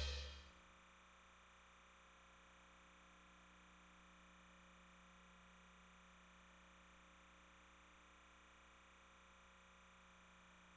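Near silence: the tail of the broadcast's music fades out within the first half second, leaving only a faint steady hum.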